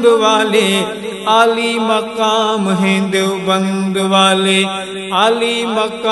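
Wordless vocals of an Urdu Islamic tarana. Layered voices hold a steady low drone under a melody that rises and falls, with a quick upward glide about five seconds in.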